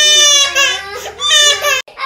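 A toddler crying loudly in two long, high wails; the second cuts off suddenly near the end.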